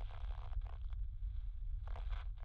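A steady deep rumble of the soundtrack's background drone, with a faint hiss and a few faint ticks over it.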